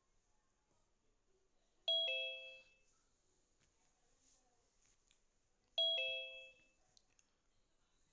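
Zoom's participant-join chime, a two-note ding-dong stepping down from a higher to a lower note. It sounds twice, about four seconds apart, each time someone joins the meeting.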